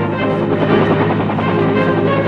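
Background music with the rotor noise of a UH-1 Huey helicopter lifting off beneath it.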